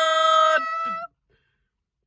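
Family voices holding the last sung note of a theme song together. The lower voice drops out about half a second in and the higher one trails on alone until it stops about a second in, followed by dead silence.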